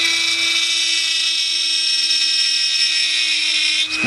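Dremel 3000 rotary tool running at mid speed with a steady high whine, its bit melting and carving through a plastic model kit part.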